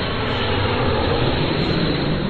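Steady, loud rumbling noise with no tune or voice: the sound effect under a closing production-logo card.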